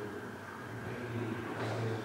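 A steady low mechanical hum with a few even overtones, growing a little louder near the end.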